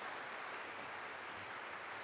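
Quiet room tone: a faint, steady hiss with no distinct events.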